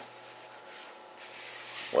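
Quiet room tone with a steady low hum and a faint rubbing noise from about a second in, as a pen is moved toward a set plastic snap trap.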